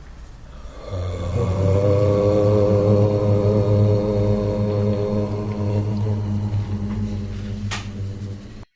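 A single low note, chanted or droned, held steadily for several seconds like an opening mantra. It swells in over the first second or so. A short sharp click comes near the end.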